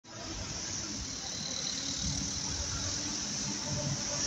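Road traffic: a car passing and the low, steady engine rumble of a Wright Eclipse Gemini double-decker bus approaching, growing slightly louder.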